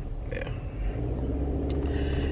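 Car engine running, heard from inside the cabin: a steady low drone that comes up a little about a second in.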